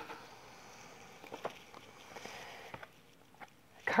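Faint handling of tarot cards: a soft rustle with a few light clicks as one card is put down and the next picked up.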